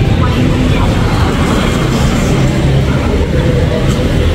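Steady low engine rumble of motor traffic, with faint voices mixed in.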